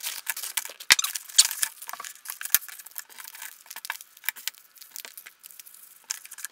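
Cardboard and paper packaging rustling and crinkling as cosmetics are unpacked by hand. A stream of small taps and clicks comes from flat boxes and eyeshadow cards being picked up and set down on a table, with a few sharper taps in the first couple of seconds.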